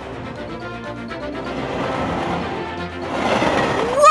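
Cartoon background music with a rushing, rattling sound effect of train carriages speeding along a roller-coaster track, growing louder in the last second.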